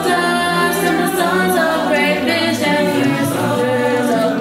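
Mixed choir of adult and youth voices singing a cappella in sustained harmony, with no instruments.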